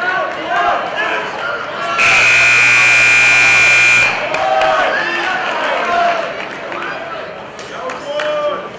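Gym scoreboard buzzer sounding one steady, loud tone for about two seconds, starting about two seconds in and marking the end of a wrestling period. Spectators and coaches shout and yell before and after it.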